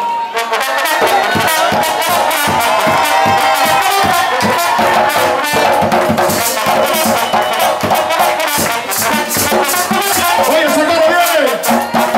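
Trumpet playing a melody line over hand-played barrel drums in a live plena band, the drums keeping a steady driving rhythm underneath.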